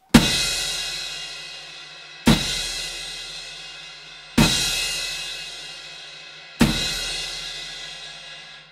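Crash cymbal struck four times, about two seconds apart, each hit backed by a bass drum kick so the accent has a low thump beneath the bright wash. Each crash rings out and fades before the next.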